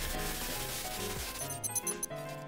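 Outro sting: music under a noisy, scratchy glitch sound effect, breaking into rapid stuttering digital blips near the end.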